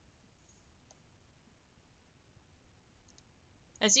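A few faint computer mouse clicks against quiet room tone: one about a second in and two close together about three seconds in. A woman starts speaking just at the end.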